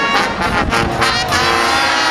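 Marching band playing: brass with drum hits in the first second, then a held brass chord.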